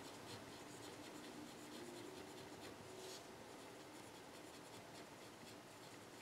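Faint scratching of a pen writing words on paper, in short uneven strokes.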